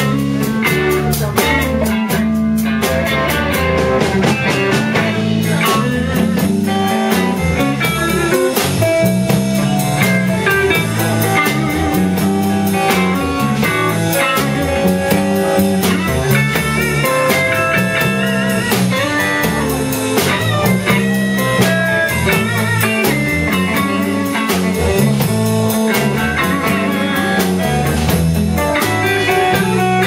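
Live blues band playing an instrumental passage with no singing: electric guitars over electric bass and a drum kit, with a guitar line moving note to note above the steady beat.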